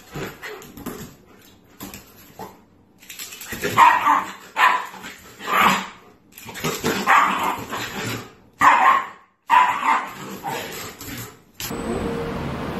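Shiba Inu barking in a run of short, separate barks, louder from about four seconds in: excited play barking at a toy.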